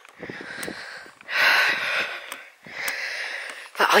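A walker breathing hard, with two long breaths: a louder one about a second in and a shorter one near three seconds.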